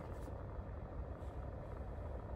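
Car engine idling, a steady low hum heard inside the cabin.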